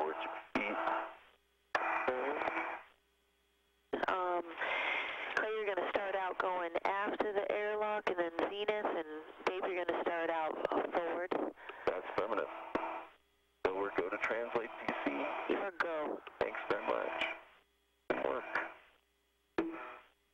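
Spacewalk radio voice loop: speech over a narrow, tinny radio channel in keyed transmissions that start and cut off abruptly, with short silent gaps holding a faint steady hum.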